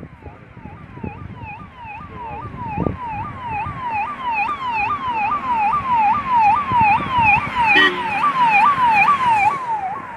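Electronic siren of an approaching motorcade's escort vehicle, a fast repeating yelp of about two to three sweeps a second that grows louder as the convoy nears, with a brief horn toot about eight seconds in.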